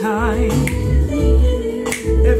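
A song playing: a wavering sung vocal over a steady heavy bass beat, with a sharp click about two-thirds of a second in and another near the end.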